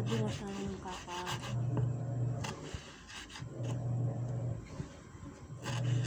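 Kitchen knife chopping tomato and pepper on a wooden cutting board: scattered short knocks and scraping of the blade on the wood. A low hum of about a second recurs roughly every two seconds.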